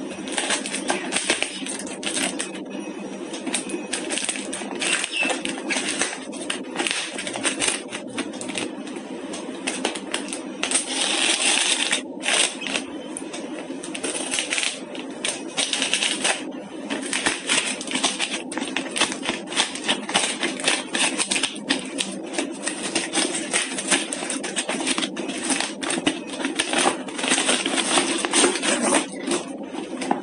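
Plastic courier mailer and packing tape being torn open and crinkled by hand: a dense crackling rustle with louder tearing stretches around the middle.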